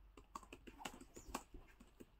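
Faint, irregular tapping of keys being typed on a computer keyboard, a few taps a second.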